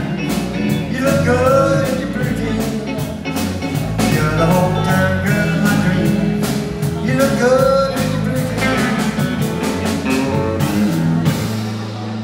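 Live band playing: a drum kit with cymbals, electric guitar and bass guitar, with a man singing into a microphone. The drums stop right at the end.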